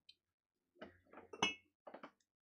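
A few faint clinks and taps as a paintbrush and small paint jars are handled on a craft table, the loudest a short ringing clink about one and a half seconds in.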